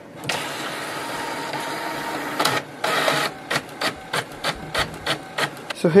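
HP Envy 6000 series inkjet printer running during automatic two-sided printing. A steady mechanical whir for about two seconds, a louder stretch about two and a half seconds in, then a run of short, evenly spaced strokes, about three a second.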